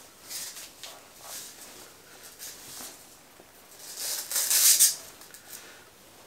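Thin plastic wrapping bag crinkling and rustling as an electric guitar is drawn out of it, in a string of rustles that is loudest about four and a half seconds in.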